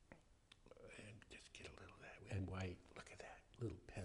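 A man's voice murmuring and half-whispering quietly under his breath, with a short, louder voiced stretch about two and a half seconds in and another near the end.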